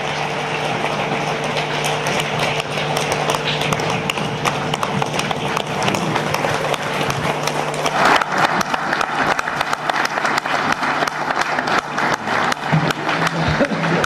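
Audience applauding, a dense clatter of many hands clapping that grows louder from about eight seconds in.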